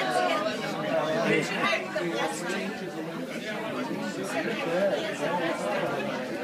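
Crowd chatter in a bar: many voices talking over one another at a steady, moderate level.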